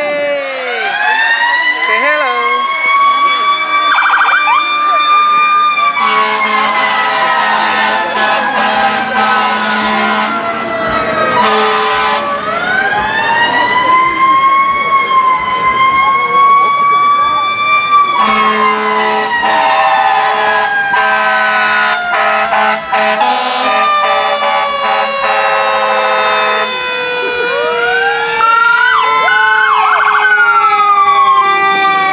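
Fire engine siren winding up slowly to a high wail and then gliding down over several seconds, twice, the pattern of a mechanical siren spinning up and coasting down; it starts rising again near the end. A steady low horn sounds in long blasts over the second glide.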